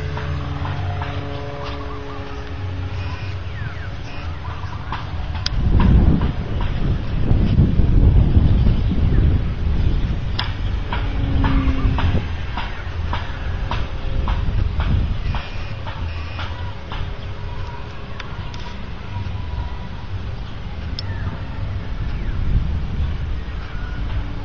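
RC Etrich Taube model airplane's motor and propeller droning as it lifts off and climbs away, the drone strongest at the start and then fainter and wavering in pitch. Low rumbling gusts of wind on the microphone swell about six to ten seconds in.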